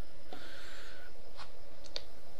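Steady background hiss from the narration microphone, with a faint rustle about half a second in and two soft clicks near the end.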